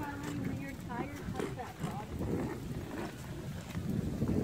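Hard plastic wheels of a Step2 ride-on push car rolling over a concrete sidewalk, a continuous low clatter of small knocks. A brief high voice sounds in the first second.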